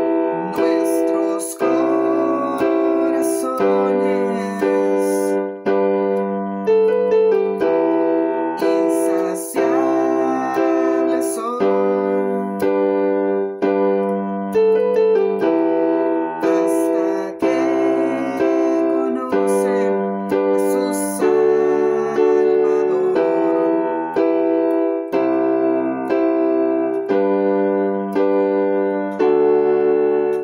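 Digital piano keyboard playing the verse of a worship song in G major, bass notes and block chords together in a steady rhythm.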